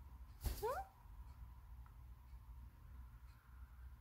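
A single short rising "huh?" about half a second in, then the room is nearly quiet apart from a few faint ticks.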